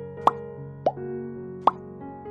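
Three quick cartoon 'plop' pop sound effects, each a short upward-sweeping blip, about a second in, shortly after and near the end, from a like-subscribe-bell button animation popping onto the screen. Soft background music with held tones runs underneath.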